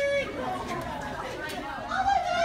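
Indistinct chatter of voices, with one drawn-out voiced sound ending just after the start.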